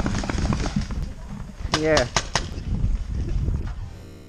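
Paintball markers firing: a quick run of about four sharp pops about two seconds in, over a low rumble of movement on the microphone.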